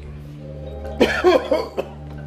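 A man coughing hard about four times in quick succession, starting about a second in, as he doubles over in pain. A low, steady music drone runs underneath.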